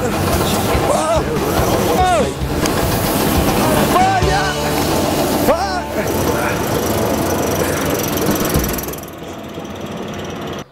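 Straw-blowing bedding machine running hard, blasting chopped straw through its chute, with a man yelling and yelping over it; the machine noise drops away near the end.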